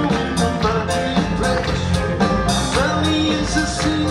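Live rock band playing: electric guitar, bass, drums and keyboards with a steady beat, and a man singing over it through a PA.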